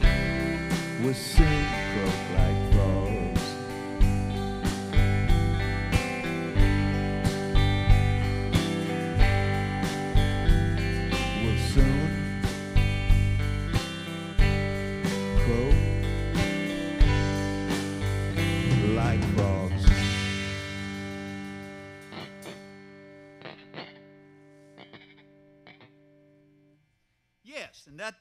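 Live rock band, with electric guitars, bass guitar and drums, playing the close of a song. The drums and guitars drive on to a final loud hit about 20 seconds in, then the last chord rings and fades away over several seconds.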